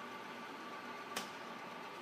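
Steady low machine hum with a faint high whine, and one light click about a second in.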